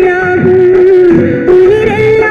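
An old Tamil film song playing: a high melodic line held on long notes with small turns and dips, over softer accompaniment.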